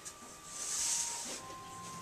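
A soft rustling hiss, just under a second long starting about half a second in, as cotton shirts are slid and smoothed on the printing pallet, over faint background music holding steady notes.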